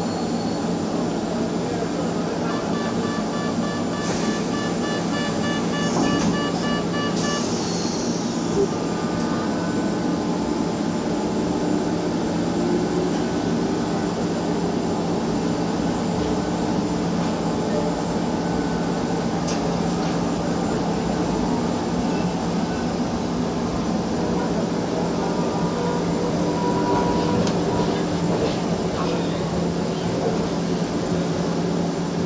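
Manchester Metrolink T68 tram heard from inside the car while running: a steady rumble with a constant low hum. A few seconds in, a rapid, evenly repeating beep sounds for about five seconds.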